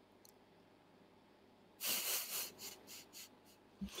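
Near silence, then about halfway in a sharp breath out into a call microphone, followed by a few shorter breathy puffs.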